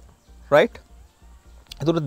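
A man's voice: one brief vocal sound about half a second in, a short pause, then lecturing speech resuming near the end.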